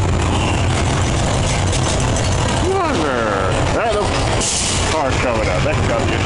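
Wild mouse roller coaster car running along its steel track with a steady low rumble. A short hiss of air comes about halfway through, with voices over it.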